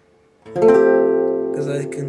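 A guitar chord strummed about half a second in and left ringing, followed by shorter, quicker strums near the end.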